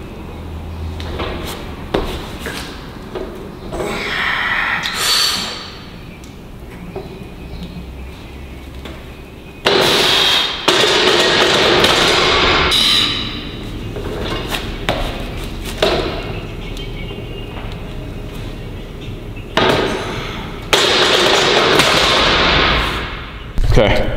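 A heavy bench press set: a loaded barbell knocking and clanking in the bench's rack hooks, with a few sharp metal knocks. Loud rushing, breath-like noise comes in two stretches of two to three seconds, about ten seconds in and again near the end.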